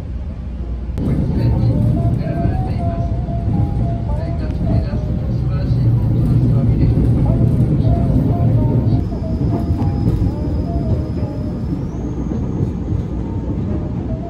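Train running noise heard inside the carriage: a low rumble that swells about a second in as the train gets under way, joined from about nine seconds in by a thin high whine that steps up in pitch near the end. Background music plays over it throughout.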